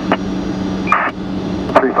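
Air traffic control radio hiss with a steady hum in a gap between transmissions. A short burst of noise comes about a second in, and a radioed controller's voice begins near the end.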